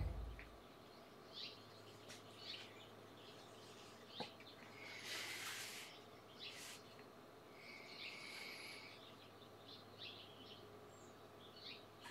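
Near silence with faint, scattered short chirps, like distant birds calling, and a brief faint rush of noise about five seconds in.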